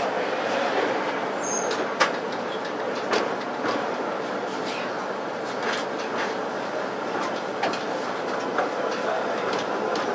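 Melbourne tram rolling along street track: a steady rolling rumble with irregular sharp clicks as the wheels pass over rail joints and the crossing trackwork, the loudest about two seconds in.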